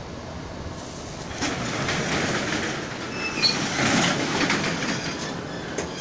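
Metal roll-up shutter door rattling and squealing as it rolls, lasting several seconds, with a few brief high-pitched squeals in the middle.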